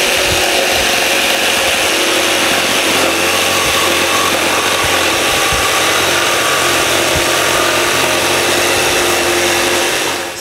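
Ryobi cordless jigsaw with a coarse, few-teeth blade cutting through plywood, running steadily at full speed. The blade cuts only on the upstroke and makes a fast, rough cut.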